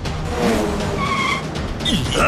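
Cartoon sound effect of a sports car speeding off: engine noise with a falling whine, then a short high tyre squeal about a second in.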